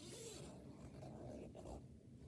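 Faint rustling of the mesh fabric and zipper of a pop-up mesh insect enclosure as its flap is pulled open, strongest in the first half second.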